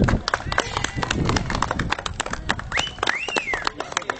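A small group clapping, with many quick irregular claps. About three seconds in there is one short high whoop that rises and falls.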